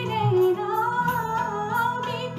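A woman singing a Hindi film melody into a handheld microphone, holding long notes and sliding between them with ornamented turns.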